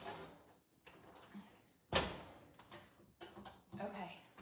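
Sheet pan of toasted bread cubes being taken out of a kitchen oven: a sharp clunk about halfway through, with a few smaller knocks near the end.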